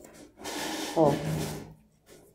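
A woman says one short word, "ó", about a second in, wrapped in a soft hissing noise close to the microphone that starts just before the word and fades out before the end.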